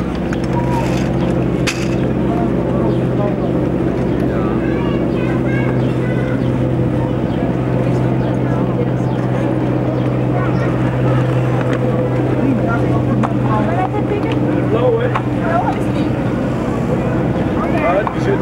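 Indistinct voices of people around, with no clear words, over a steady low hum, and a few light clicks.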